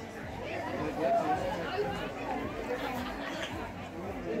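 Background chatter: several people talking indistinctly, none of it close to the microphone.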